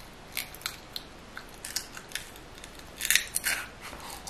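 Close-up chewing of skewered barbecue food: a string of short, crisp, wet mouth clicks and smacks, the loudest about three seconds in.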